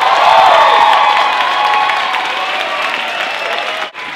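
Audience applauding and cheering, loudest in the first second and then slowly easing off.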